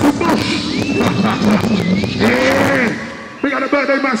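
An MC shouting and chatting into a microphone through a loud PA over drum and bass, with a held high tone at about one to two seconds. The bass drops out about three seconds in, and the voice carries on alone.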